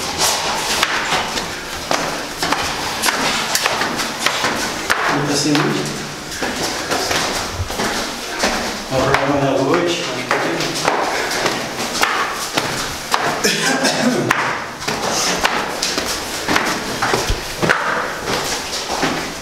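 Footsteps thudding on a stairway as several people climb, with short bursts of indistinct voices in between.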